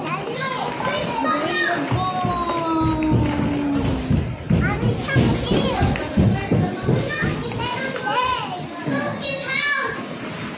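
Several young children calling out and chattering as they play, their high voices rising and falling, with dull thumps of movement around the middle.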